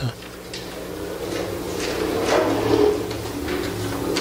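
Faint rustling and handling noises, a few soft scrapes, over a steady low electrical hum.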